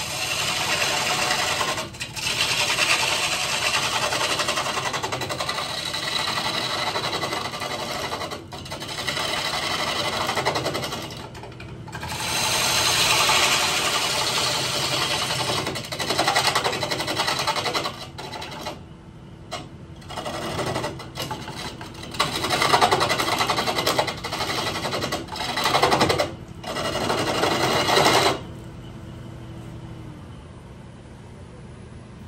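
Bowl gouge cutting into a walnut bowl blank spinning on a wood lathe, in passes of several seconds broken by short gaps where the tool comes off the wood. Near the end the cutting stops, leaving only the lathe's steady running hum.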